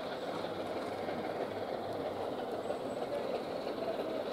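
LNER A3 Pacific steam locomotive Flying Scotsman and its train of coaches passing close by, working hard: a steady, dense rumble with no separate exhaust beats standing out.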